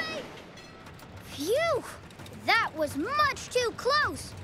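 A high-pitched voice giving four short wordless cries, each rising and falling in pitch, in the second half after a quieter first second and a half.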